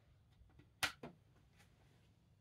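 A chess piece set down on a folding pocket chess board: one sharp click, with a fainter click just after.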